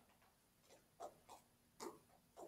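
Near silence: room tone with a few faint, short clicks, three of them about a second in and one near the end.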